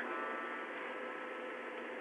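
Steady hiss with a faint electrical hum, unchanging throughout, with no distinct event.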